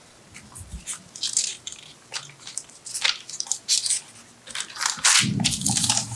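Papers rustling and being handled close to a microphone: a scatter of short crinkles, louder and fuller about five seconds in.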